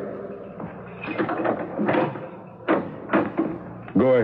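Sound effect of a door being unlocked and opened: a series of short knocks and rattles, about four in all.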